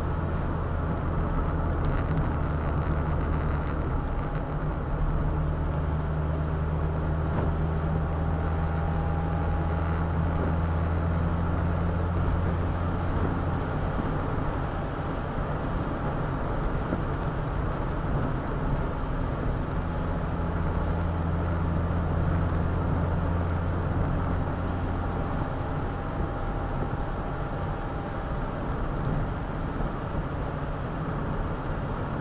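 Roadster driving along a wet road at steady speed: a low, steady engine drone under a constant wash of tyre and road noise.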